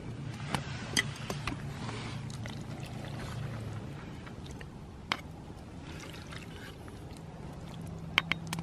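A plastic spatula stirring and scooping cheesy pasta in a metal pot and knocking against the pot and a camp bowl: soft wet scraping with a few sharp clicks, the loudest about five seconds in, over a low steady hum.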